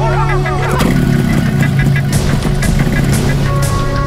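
Dramatic film-score music over a dense, steady rumbling sound-effect layer, with gliding tones in the first second and a few sharp hits later.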